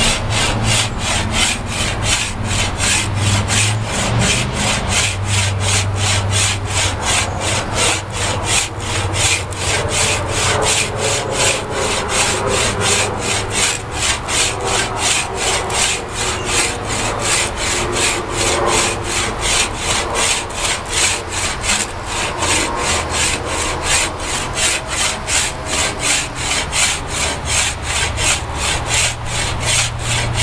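Wood rasp scraping along a hickory bow limb in steady back-and-forth strokes, about two to three a second, taking small shavings off the stronger limb to even out the bow's tiller.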